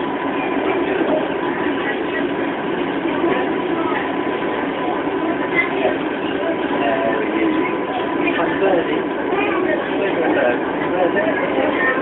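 Steady running noise inside a moving passenger train carriage, with a crowd of passengers, children among them, chattering in the background.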